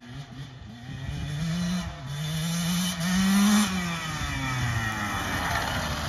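2022 KTM 150 SX two-stroke dirt bike being ridden hard and coming closer. The engine pitch climbs and drops back several times as it revs through the gears, loudest about halfway through.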